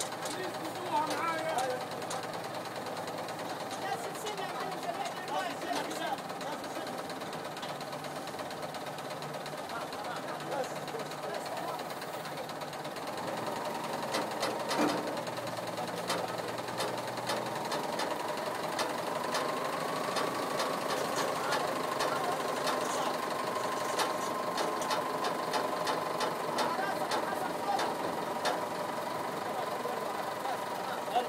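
Caterpillar 950E wheel loader's diesel engine running with a steady whine that rises slightly in pitch and grows a little louder past the middle, as the raised bucket holds the load.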